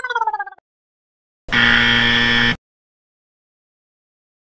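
A short cartoon-like tone sliding down in pitch, then about a second later a loud, steady buzzer sound effect lasting about a second: a wrong-answer buzz marking the red cross for 'can't do it'.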